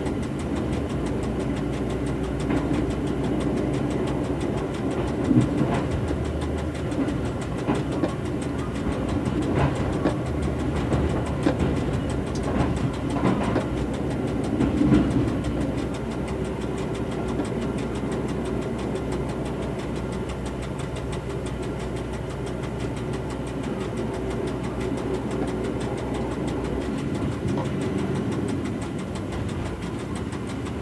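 Rebuilt Y1 railcar with Volvo bus engines and Allison transmission, heard from the driver's cab: steady engine drone with wheels clattering and knocking over points from about five to fifteen seconds in. The deep part of the engine drone eases near the end as the railcar runs in along the platform.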